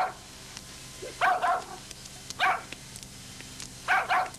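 A dog barking repeatedly, with short barks about a second apart.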